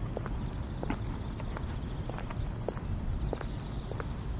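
Footsteps on a paved promenade, about two to three short clicks a second, over a low steady rumble.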